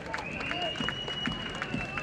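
Scattered hand clapping from a small group, a few irregular claps at a time, answering a call for applause. A steady high-pitched tone runs under it for most of the time.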